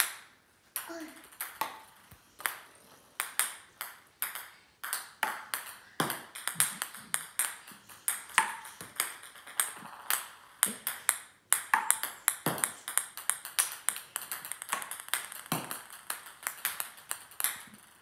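Ping pong balls batted with a paddle and bouncing on a hardwood floor: a busy run of sharp light clicks, with many balls' bounces coming quicker and fainter as they die away.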